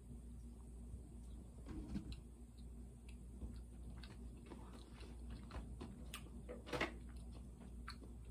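A person chewing a bite of a chocolate-coated peanut butter snack cake: faint mouth and chewing sounds with scattered small clicks, two of them louder, about two seconds in and near the end.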